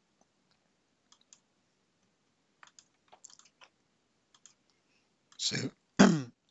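Faint computer mouse clicks, a few scattered clicks and quick pairs, as files are picked and confirmed in upload dialogs.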